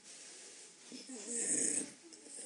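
An elderly man's audible breath, swelling about a second and a half in.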